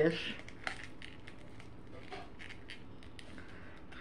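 Light, scattered clicks and taps of a small metal earring and its paper backing card being handled by fingers.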